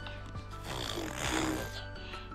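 Soft background music with sustained notes, and a rough, breathy vocal noise from a baby close to the microphone lasting about a second, beginning just over half a second in.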